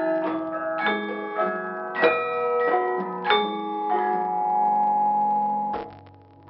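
Javanese gamelan ensemble playing, with bronze saron keys struck by a wooden mallet: a stroke about every half second, each note ringing on. The strokes stop about four seconds in and the held notes ring until the sound cuts off suddenly near the end.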